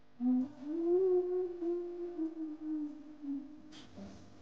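A woman humming one long held note that rises in pitch at the start, holds, then sags slowly before stopping near the end.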